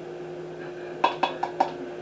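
Four or five quick light clicks about a second in, from a small plastic cup knocking against the rim of a stainless steel mixing bowl as eggs are tipped into it. A steady low hum runs underneath.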